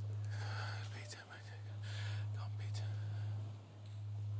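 Breathy whispering from a man's voice, rising and fading in slow waves, over a steady low hum.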